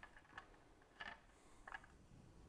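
Near silence with four faint, light clicks over two seconds: an Allen wrench and loose mounting bolts being handled as a motorcycle windscreen is worked free of its bracket.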